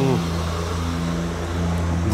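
A motor vehicle's engine running steadily at an even speed.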